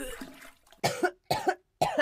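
A woman making a brief strained sound, then coughing three times in quick succession, about half a second apart.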